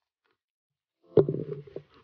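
About a second in, a sudden knock close to the microphone as the phone is jerked, followed by about half a second of low, rumbling handling noise.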